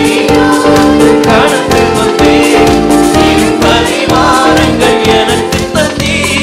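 Live gospel praise and worship music: a lead singer with a choir of backing voices over keyboard and a steady drum beat.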